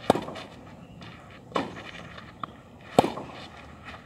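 Tennis ball struck with racquets in a baseline rally on a clay court: sharp hits about a second and a half apart, the loudest at the start and about three seconds in, with a lighter knock between them.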